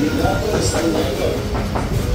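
Street ambience heard while walking: a steady low rumble with people's voices in the background.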